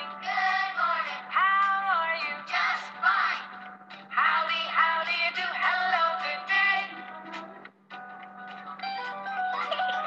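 Children's good-morning song playing: sung vocals over light music backing, with a short break near eight seconds after which the instrumental backing carries on.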